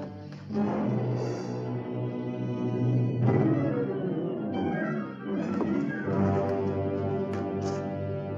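Orchestral film score playing long held chords, which shift to new chords about three seconds in and again about five seconds in.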